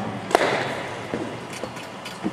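A cricket bat striking a ball: one sharp crack about a third of a second in, echoing in an indoor sports hall, followed by a few faint knocks.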